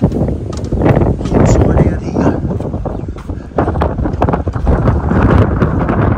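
Wind buffeting the camera microphone as a loud, gusting rumble, with irregular knocks and handling noise throughout.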